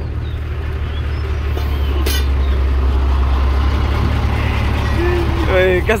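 Palm-oil fruit lorry's engine idling steadily with a low hum, with one sharp metallic clank about two seconds in as the rear tailgate latch is worked.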